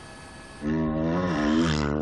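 Rally motorcycle engine running hard at high revs, its pitch wavering up and down. It comes in loudly about half a second in and cuts off at the end.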